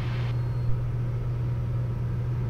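Steady low drone of a Piper single's six-cylinder piston engine and propeller in cruise, heard inside the cockpit. A short hiss cuts off just after the start.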